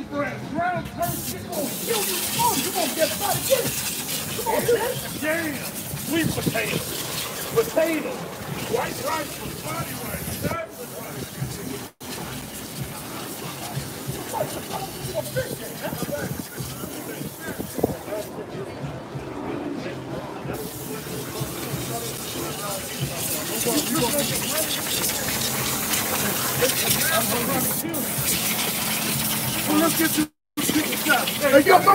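Indistinct chatter of several voices over a steady high hiss, cut off briefly about twelve seconds in.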